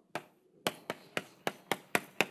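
Chalk tapping on a blackboard while characters are written: a quick, uneven series of sharp taps, about seven in two seconds.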